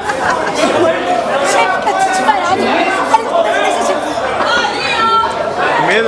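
Several people chattering and laughing over one another.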